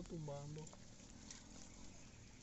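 A voice drawing out a last word for under a second, then near silence with only faint outdoor background.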